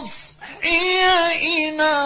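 A single male Qur'an reciter chanting in the ornate, melodic mujawwad style. After a short sibilant consonant and a brief breath about half a second in, he holds long, high, wavering notes with melismatic ornaments.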